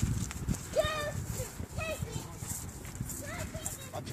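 A horse walking on soft, muddy ground, its hooves giving low thuds. Brief voice sounds come about one and two seconds in.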